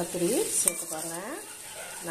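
Brinjal pieces sizzling in a pan as they are stirred and scraped with a slotted metal spatula, with repeated rising pitched tones over the sizzle.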